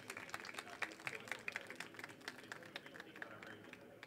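Light audience applause: many scattered hand claps, dying away near the end.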